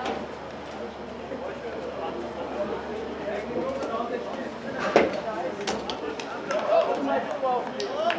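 Indistinct chatter of several people's voices, broken by a few sharp knocks: the loudest about five seconds in, more near the end.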